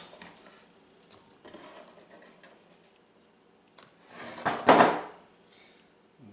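Kitchenware shifted on a wooden cutting board: faint handling noise, then one short, loud scrape about four and a half seconds in, the sound of the glass mixing bowl being slid aside.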